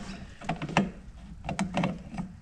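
A handful of short clicks as pliers grip and turn the bottom pivot adjuster of a Citroën 2CV rear drum brake shoe, moving the shoe out.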